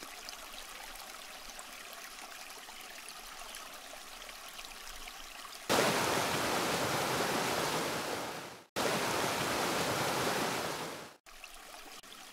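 Water boiling in a stainless-steel pot, a faint bubbling hiss with small crackles. About six seconds in, a geyser takes over: a much louder, steady rushing hiss in two stretches, each cut off abruptly.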